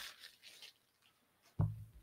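A paper mailer rustles and slides across a wooden desk, fading out within the first second. A short low sound starts sharply near the end.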